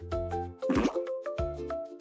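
Cheerful children's background music: held melodic notes over a short percussive hit about every 0.7 seconds.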